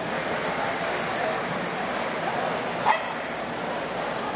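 A dog gives one short, high yip about three seconds in, over a steady background of people talking.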